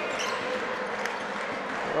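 Basketball game in an arena: a steady crowd murmur with a few ball bounces on the hardwood court.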